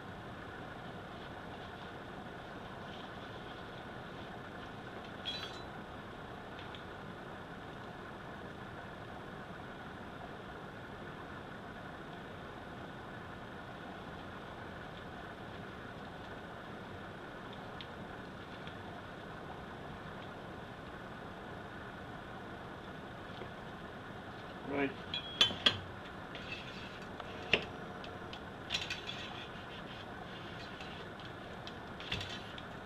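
Steady faint room hum with one click about five seconds in, then a cluster of sharp clinks and knocks near the end as a shotgun barrel and steel cleaning rod are handled.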